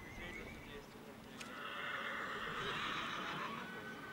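A horse whinnying once: a single call of about two seconds that starts a little over a second in and is the loudest sound present.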